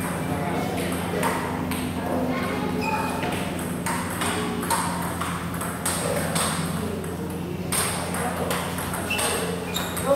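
Table tennis ball hitting the paddles and the table in a rally: sharp clicks at uneven spacing, with a steady low hum underneath.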